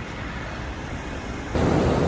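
Steady street noise with traffic in the background. About one and a half seconds in it cuts abruptly to a louder, steady rushing noise.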